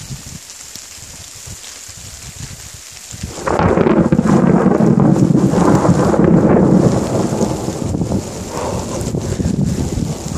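Close thunderclap: a loud rumble starts suddenly about three and a half seconds in, stays at its peak for about three seconds, then eases off as it rolls on.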